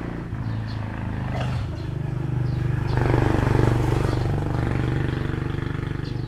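A motor engine running steadily with a low hum, swelling to its loudest about three to four seconds in and then easing off a little.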